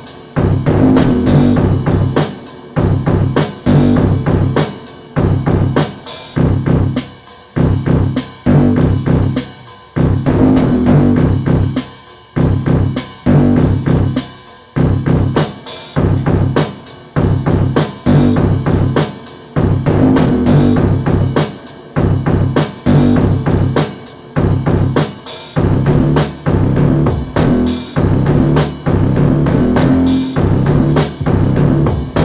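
Akai XR20 drum machine playing a repeating beat of kick, snare and rimshot over a synth bassline, with short drops in level about every two seconds.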